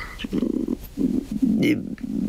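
A woman's voice in low, murmured, halting speech between clearer phrases.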